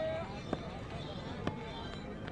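Quiet open-air ambience at a cricket ground: faint, distant voices of spectators with two soft clicks, about half a second and a second and a half in.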